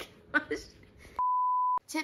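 A steady, high beep of the kind used to bleep out words, edited into the audio track. It lasts about half a second, starts a little past a second in and cuts off sharply, with the other sound gone while it plays.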